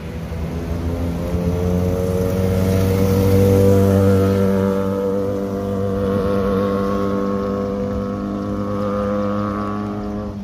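Motorcycle engines running on the road in one steady engine note. It grows to its loudest three or four seconds in, holds fairly level and stops abruptly at the end.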